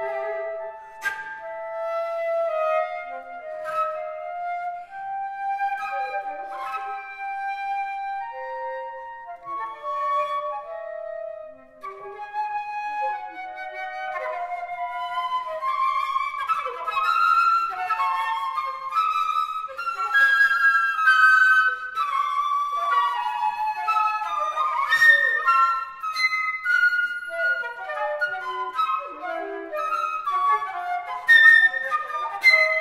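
Two flutes playing a contemporary duet, recorded live in concert. Slower, held notes in the first half give way from about halfway to faster, higher, interweaving lines with sharp accented attacks, growing louder toward the end.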